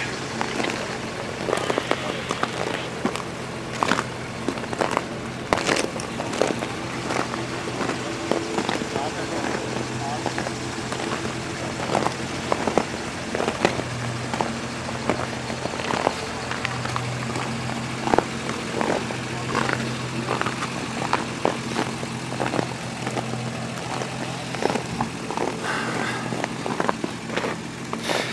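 4x4 off-road vehicles idling with a steady low engine hum that swells somewhat in the middle. Indistinct voices and scattered clicks and knocks sound over it.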